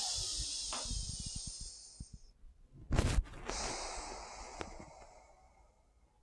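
A woman breathing through one nostril at a time while the other is held shut: a steady breath of about two seconds, a short louder burst about three seconds in, then a second long breath that fades away.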